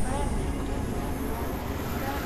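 Experimental synthesizer noise music: a dense, steady drone of noise with a high hiss, and short warbling pitched tones sliding through it that sound somewhat voice-like.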